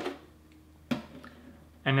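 A quiet room with a single short, sharp click about a second in; a man starts speaking near the end.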